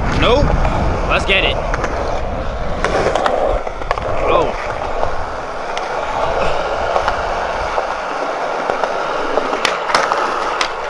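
Skateboard wheels rolling over smooth concrete with a steady rumble. A couple of sharp clacks come near the end as the board pops up onto a metal-edged ledge.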